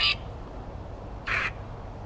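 Necrophonic ghost-box app on a phone speaker giving out two short, scratchy bursts of sound, one right at the start and another about a second and a half later: the chopped audio fragments that the user listens to for spirit voices.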